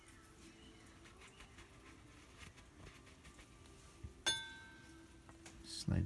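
Faint rubbing and small ticks of hands handling a greased ATV brake caliper and its slide pin, with one sharp metallic clink that rings briefly a little past four seconds in.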